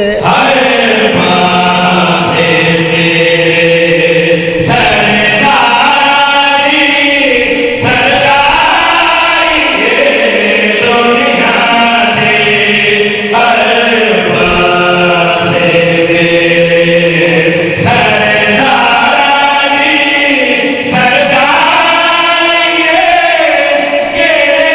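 Men singing a Shia devotional refrain together through handheld microphones, in long held phrases with a wavering, ornamented pitch, each phrase a few seconds long with a brief break before the next.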